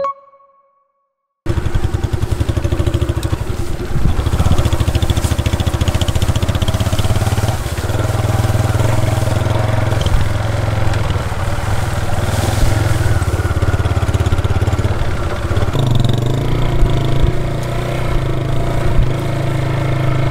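Motorcycle engine running steadily as it is ridden, starting about a second and a half in after a brief silence. Its note changes about sixteen seconds in.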